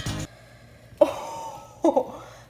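Background pop music cuts off abruptly; then a woman makes two short, sudden vocal sounds like coughs, about a second in and again near the end.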